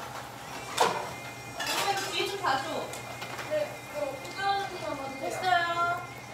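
Indistinct voices talking in a small room, with a sharp knock or clatter about a second in and a steady low hum underneath.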